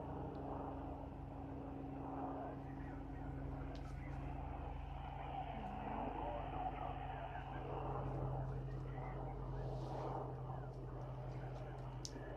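Static from a handheld radio receiver after a call for replies, a steady hiss with a low hum and faint garbled sound coming through it.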